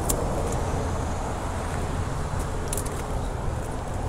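Steady low outdoor rumble, with a few faint clicks near the start and again around the middle.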